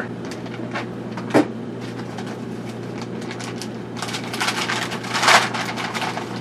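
Plastic Amazon poly mailer bag crinkling and rustling as it is pulled open, the crackle building from about four seconds in and loudest a little after five, over a steady low hum. A single short click about a second and a half in.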